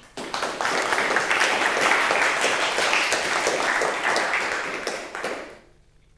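Audience applauding, swelling just after the start and dying away about five and a half seconds in.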